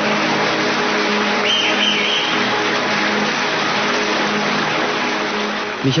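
Large audience applauding steadily, a dense even clatter of many hands.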